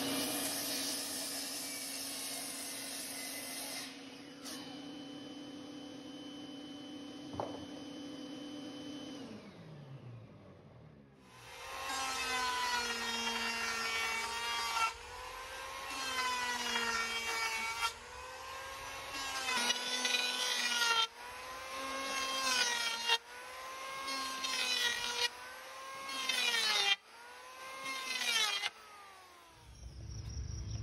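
A DeWalt compound miter saw runs and cuts through a spruce board, its motor winding down about nine seconds in. An electric hand planer then makes a string of short passes along a board, its motor pitch sagging under load and recovering in each pass, with abrupt breaks between passes.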